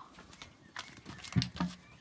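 A few sharp knocks and taps of objects being handled and moved, the loudest about one and a half seconds in.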